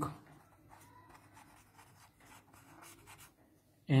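Pen writing on paper on a clipboard: faint, irregular strokes as words are written out by hand.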